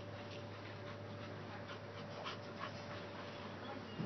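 Faint sounds of bully-breed dogs at play: scattered soft, short scuffs and breaths over a steady low hum.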